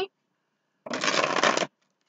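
A deck of tarot cards being shuffled by hand: one run of shuffling, a little under a second long, starting a little before halfway.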